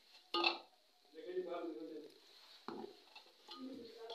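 Metal ladle knocking against a metal pot of simmering ghee while stirring, two sharp clinks about half a second in and near three seconds, with faint voices in the background.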